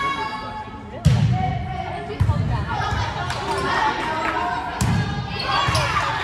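A volleyball struck in a rally in a gymnasium: four sharp smacks, the first about a second in and the loudest, echoing in the hall, with voices in between.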